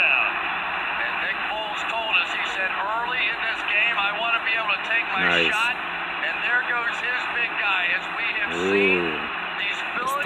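Televised American football broadcast heard through a TV speaker: commentators talking over a steady roar of stadium crowd noise.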